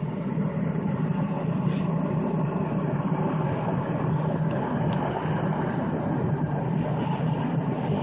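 A running engine: a steady low hum under an even rumbling noise, with no change in level.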